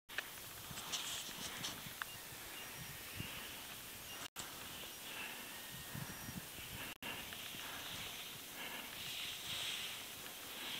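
Faint outdoor ambience on an open snowfield: a steady soft hiss with scattered small clicks and crunches. The sound cuts out briefly twice.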